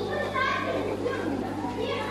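Indistinct background voices of people talking, over a steady low hum.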